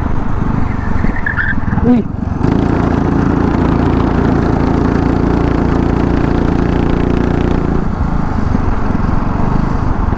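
Go-kart engine heard from the driver's seat while racing, running hard at high, steady revs after a brief dip about two seconds in. The revs drop back about eight seconds in.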